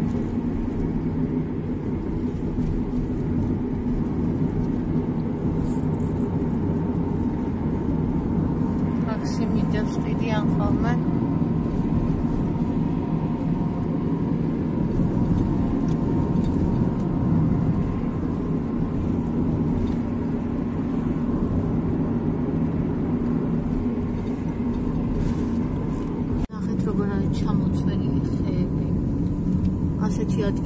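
Car driving along at speed, heard from inside the cabin: a steady drone of engine and tyre noise with a faint steady hum. It drops out for a moment about twenty-six seconds in, then carries on.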